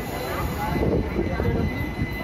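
Coaches of a departing express passenger train rolling past at low speed, a steady low running noise of wheels on the rails, with voices mixed in.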